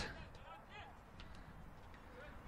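Faint ambience of an outdoor football match on artificial turf: distant voices of players and a few light knocks over a low background hiss.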